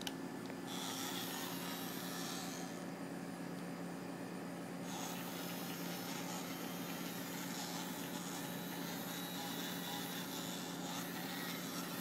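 Faint steady low hum over background hiss, with a small click at the very start.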